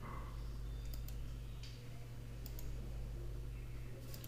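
A few sharp computer mouse clicks, one about a second in and a quick pair about two and a half seconds in, over a steady low hum.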